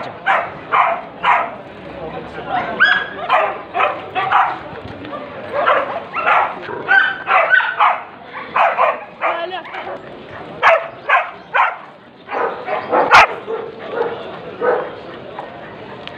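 Dogs barking repeatedly in short runs of barks, with people talking around them. A single sharp click about thirteen seconds in is the loudest sound.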